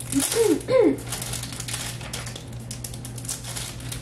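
A short throat-clearing at the start, then plastic retail packaging crinkling and rustling as it is handled for about three seconds.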